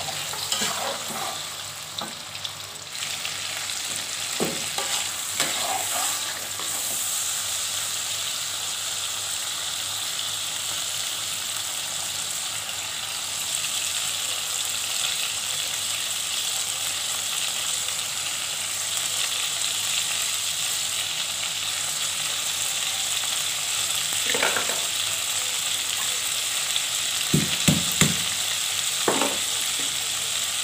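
Ground spice paste sizzling steadily as it fries in oil in an aluminium wok, with a metal spatula scraping and stirring it in the first few seconds. A few sharp knocks come near the end.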